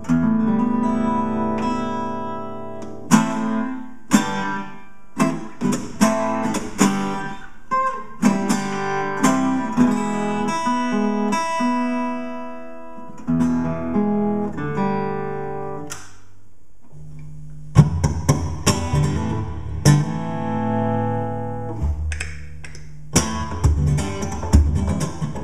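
Cuntz Oveng Custom 34-fret steel-string acoustic guitar played solo, fingerpicked single notes and chords with a few sharply accented attacks. A thinner held stretch comes about two-thirds in, and then fuller, deeper strummed chords take over.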